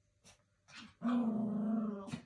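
Small dog growling, one steady growl lasting about a second, preceded by two short breathy sounds.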